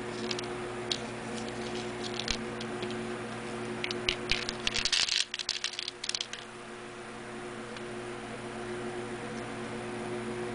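Small cut pieces of painted dryer-vent tubing clicking and clattering against each other as they are handled, with a dense burst of clatter about halfway through. A steady electrical hum runs underneath.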